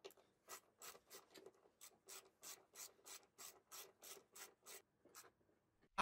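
Faint, evenly repeated scraping strokes, about three a second, from hand work on the underside of an office chair seat.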